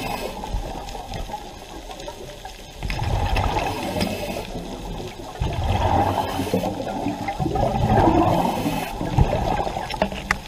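Muffled underwater rushing and churning of water heard through a submerged camera, swelling in surges every two to three seconds, with a few faint clicks.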